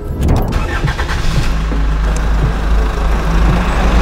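Car engine sound effect: an engine running with a deep, steady rumble that cuts in suddenly as the music drops away.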